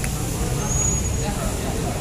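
A pause between a man's spoken sentences, filled with a steady low background rumble like distant traffic or room noise.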